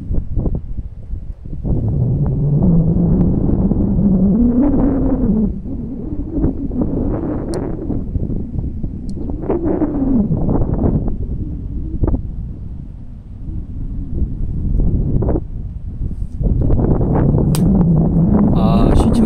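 Wind buffeting the microphone outdoors, a loud low rumble that comes and goes in gusts, with a wavering tone that slides slowly up and down.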